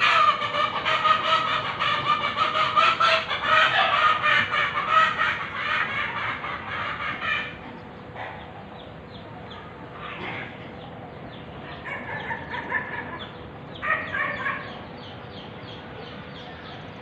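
A chicken clucking loudly in a fast, continuous run for about seven seconds, then three shorter bursts of clucks.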